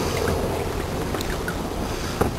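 Steady rush and slosh of water along the hull of a pedal-driven Hobie kayak moving at speed, mixed with wind on the microphone.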